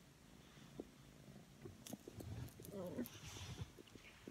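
Domestic cat purring faintly while being stroked, a low uneven rumble over the second half, with a brief murmured voice about three seconds in.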